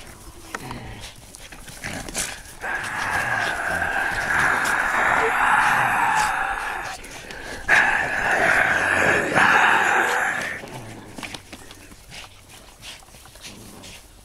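Two Boston terriers growling as they play tug-of-war over a toy ball: two long, rough growls, the first starting a few seconds in and the second after a brief break about seven seconds in.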